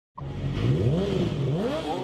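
Engine revving: the pitch climbs, drops back, then climbs again as it is revved a second time.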